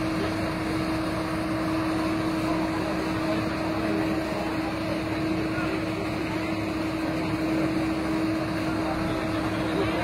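A fire engine's engine running steadily, a constant droning hum with no change in pitch.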